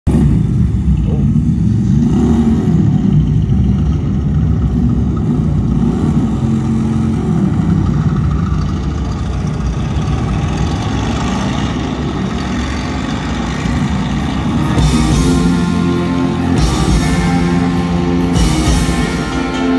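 Live rock concert heard through a loud PA, recorded from the crowd: a low, droning intro that builds, with cymbals coming in at about 15 s and the band's sustained chords at about 16.5 s.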